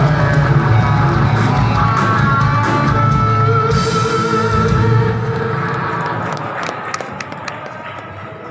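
Live rock band playing electric guitars, bass and drums, with held guitar notes over a driving low end. About five seconds in the playing stops and the sound dies away, with a few sharp clicks as it fades.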